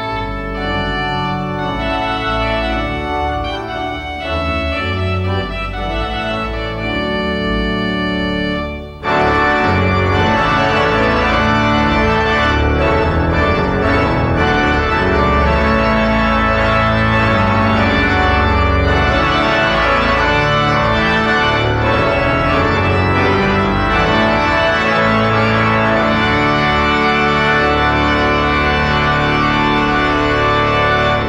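Large pipe organ playing sustained chords over a deep bass. About nine seconds in, the music breaks off briefly and resumes in a louder, fuller passage.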